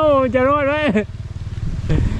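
A man exclaims in Thai for about a second in an anxious, drawn-out voice, over a steady low rumble that carries on after he stops.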